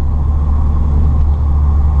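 Steady in-cabin drive noise of a Peugeot 205 Dimma cruising at an even speed: a low engine drone with road noise, without revving.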